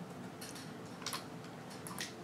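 A few faint, sharp computer mouse and keyboard clicks, spaced irregularly, over quiet room tone.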